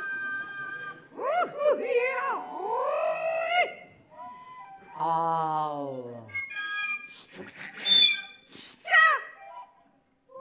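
Free improvisation for voice and small wooden flute: swooping vocal cries and whoops rising and falling in pitch, a long downward vocal slide about halfway through, and two sharp, piercing high cries near the end.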